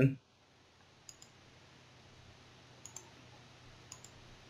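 Computer mouse button clicked three times in quick pairs, about a second apart, each pair two sharp ticks close together. Faint background hiss lies under them.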